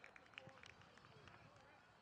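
Near silence on an open field: faint, distant voices of players with a few light ticks in the first second.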